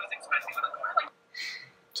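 A man's voice from a YouTube video playing through a 2006 MacBook Pro's built-in speakers, thin and lacking bass. It cuts off about a second in as playback is paused, followed by a short hiss.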